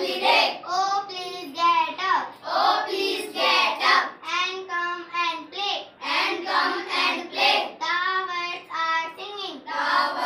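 A young girl singing a song solo and unaccompanied, in long held notes that bend in pitch.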